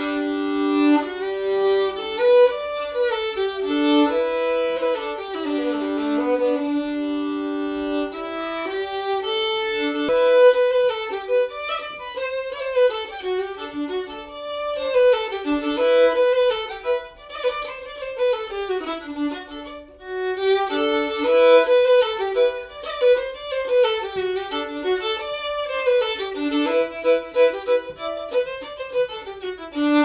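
Fiddle playing an old-sounding Québécois traditional cotillon, a quick melody that starts at once and runs on without a break.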